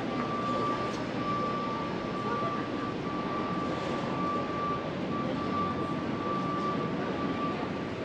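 City street background noise, a steady din of distant traffic, with a thin high whine running through it that breaks off briefly a few times and stops shortly before the end.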